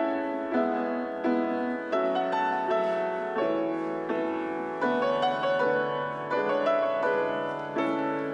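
Grand piano being played: melody notes over chords struck at an even, unhurried pace, each note ringing and fading before the next.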